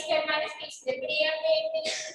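A high-pitched human voice with drawn-out, held tones, sounding close to singing or chanting.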